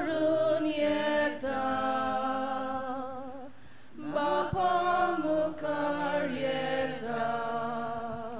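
Choir singing a Konkani hymn, held notes with vibrato in two phrases, with a short break about halfway through.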